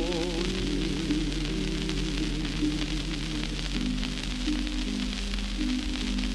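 Harp playing the closing bars of a song on a 1939 shellac 78 rpm record, under steady surface hiss and crackle. A tenor's held, wavering sung note dies away just after the start.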